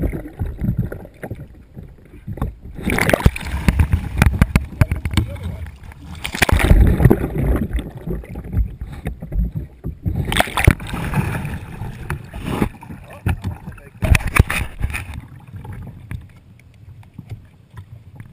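Pool water splashing and rushing around a kayak as it capsizes and is rolled back upright with hand paddles, in several loud, irregular bursts of splashing. Between the bursts the sound turns dull and muffled while the microphone is underwater.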